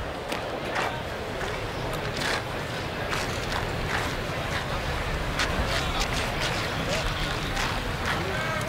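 Ballpark crowd ambience: a steady murmur of many spectators' voices, with scattered short, sharp sounds through it.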